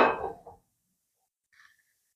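A nonstick kadhai set down on the metal pan support of a gas stove: one clank right at the start that dies away within about half a second.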